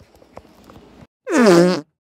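A short comedic sound effect about halfway through: a buzzy tone sliding down in pitch for about half a second. Before it, a few faint clicks.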